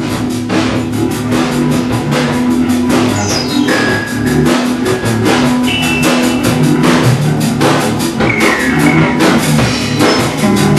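Punk rock band playing live: drum kit keeping a steady beat under electric guitar and synthesizer keyboards, with a few short falling high synth tones.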